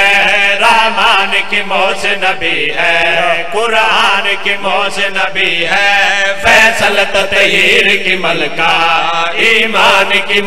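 A group of men chanting a devotional qasida refrain in Urdu in unison through microphones, in long drawn-out notes with wavering, ornamented pitch.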